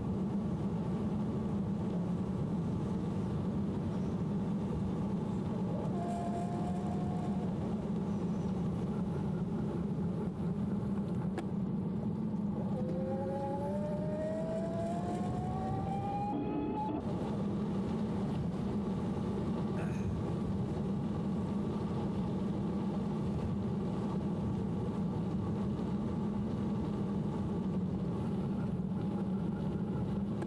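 Steady rush of wind and tyre noise from riding an e-bike. About 13 s in, the CYC Photon mid-drive motor whines under power, rising in pitch for about four seconds as it spins up, then cuts off sharply when the throttle is released. There is a shorter, steady whine about 6 s in.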